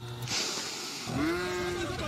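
A brief hiss, then a cow mooing once about a second in, one long call that rises and then holds, over a steady background din.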